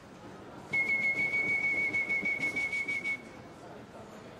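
A single high whistled note, held steady with a slight flutter for about two and a half seconds, starting just under a second in.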